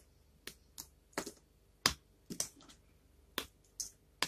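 Small pieces of dry, varnished soap snapped apart between the fingers: a string of short, sharp cracks at irregular intervals, about eight in four seconds, the loudest a little under two seconds in.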